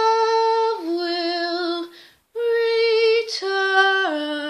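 A woman singing unaccompanied in long held notes. One note steps down about a second in, there is a short breath, then another long held note steps down again.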